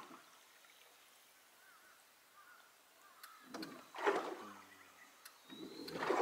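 Near silence for about three seconds, then a brief low murmured voice a little past halfway, with a couple of faint clicks.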